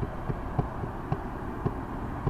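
A steady low hum at a stopped roadside intersection, with a faint sharp tick repeating about twice a second.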